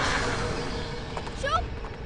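A woman crying out, short rising calls about one and a half seconds in, over a fading noisy background.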